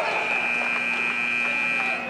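Gym scoreboard buzzer sounding one steady electronic tone for nearly two seconds over crowd voices, cutting off just before the end, as the wrestlers break apart.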